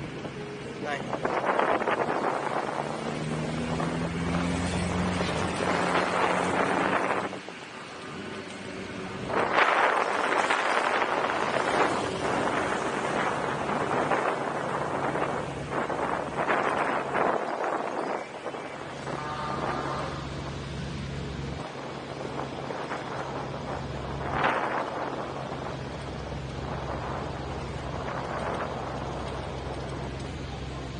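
Honda Gold Wing touring motorcycle riding at low city speed: a steady low engine hum, its note rising a few seconds in as it picks up speed. Wind noise on the microphone surges loudly several times.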